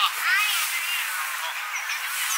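Children's high-pitched voices calling and shouting to each other across a football pitch.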